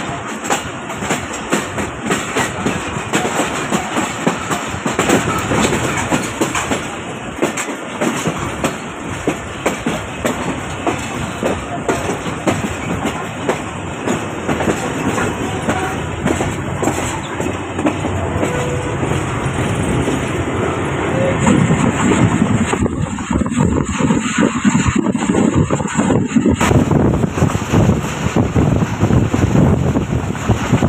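A moving passenger train heard from an open coach door: wheels clacking over the rail joints over a steady running rumble. It grows louder and heavier about two-thirds of the way through.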